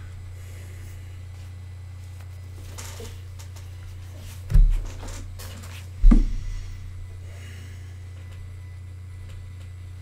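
Steady low hum, with two dull knocks about four and a half and six seconds in.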